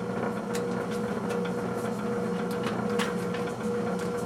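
Drill press motor switched on and running steadily, the spindle and bit turning free above the bowling ball before drilling starts: an even hum with a faint steady whine.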